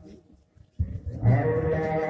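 Men's voices chanting in long, drawn-out held notes, starting again about a second in after a brief pause.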